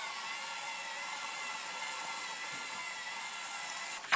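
LEGO Mindstorms EV3 robot's electric drive motors and gears whining steadily as the robot drives straight ahead, an even, high-pitched hum that holds without change.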